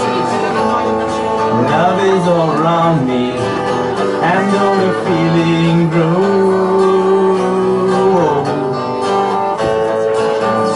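Strummed acoustic guitar with a man singing over it.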